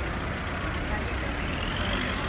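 Street traffic: cars driving slowly past close by with their engines running as a steady low rumble, mixed with people talking.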